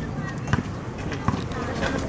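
A basketball bouncing on a concrete court, with sharp thumps about half a second in and again a little past a second, over faint voices in the background.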